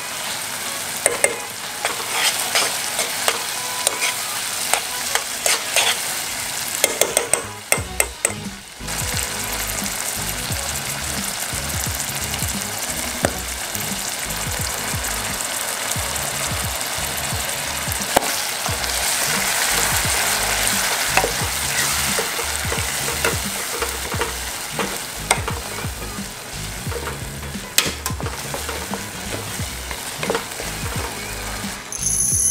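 Squid rings frying and sizzling in oil in a pan, with the repeated scrape and clink of a spoon stirring against the pan. The sizzle dips briefly about eight seconds in, then carries on.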